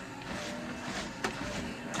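ProForm Crosswalk Sport treadmill running at low speed, its motor and belt making a steady hum, with one click about a second in.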